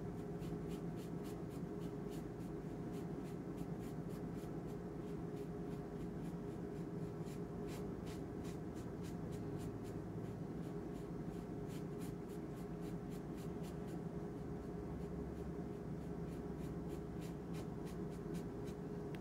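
Paintbrush bristles stroking and dabbing across wet watercolor paper: a run of small scratchy ticks over a steady low hum.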